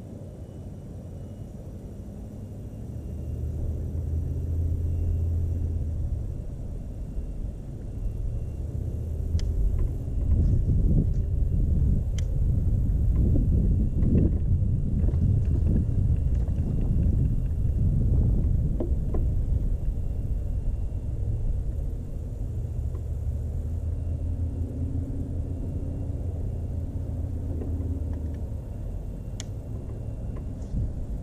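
Electric trolling motor on a jon boat humming low in two stretches, about three seconds in and again near the end. Between them there is a louder, uneven low rumble.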